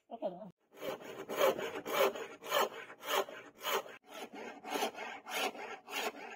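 Thin-bladed hand saw cutting through a hardwood block, in steady back-and-forth strokes about two a second that start about a second in.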